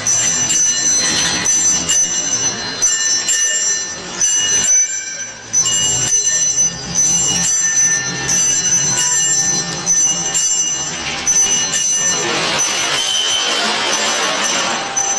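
Musique concrète noise collage: several high, metallic ringing tones that cut in and out every second or so over a dense layer of noise. The sound drops briefly about five seconds in, then returns suddenly.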